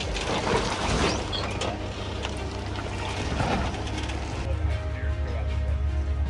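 A Jeep's engine running low under a steady rumble as it crawls down a rock ledge, with its tyres scraping and knocking over the stone. About four and a half seconds in this gives way to background music.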